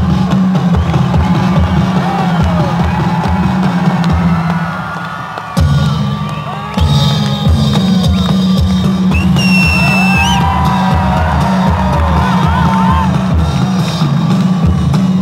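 Loud music with a heavy drum beat over public-address loudspeakers, with a large crowd cheering and shouting. The music dips for about two seconds midway and cuts back in abruptly, and a high held whistle sounds about ten seconds in.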